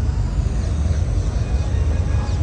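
Steady, fairly loud low rumble of outdoor background noise with no distinct events.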